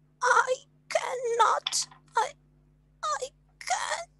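A person's voice making a run of about six short wordless wailing, moaning cries: frustrated whining at not being able to do something.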